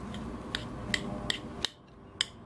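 Metal spoon clinking against a ceramic bowl while stirring a moist crumb-and-crab stuffing: a few light clicks, about two or three a second, in the second half.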